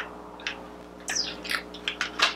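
A few short clicks and crinkling rustles from cosmetics packaging being handled, bunched together about a second in.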